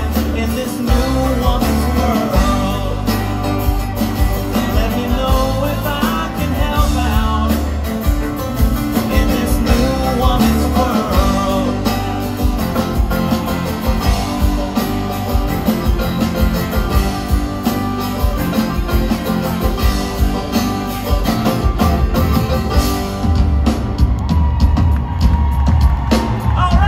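A live folk-rock band playing the song's closing stretch, loud and steady: banjo, acoustic guitar, electric bass, cello and a drum kit, with strong bass throughout.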